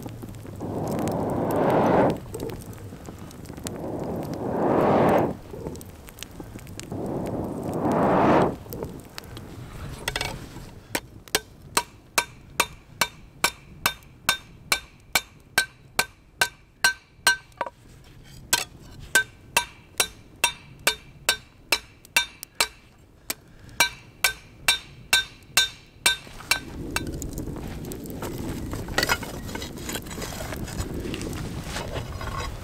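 Three long whooshes of a homemade bellows blowing air into a forge fire, then a hammer forging a red-hot iron spearhead on a steel-plate anvil: a fast run of ringing metal-on-metal blows, about two a second, with two short pauses. Near the end the bellows-fed fire is heard rushing again.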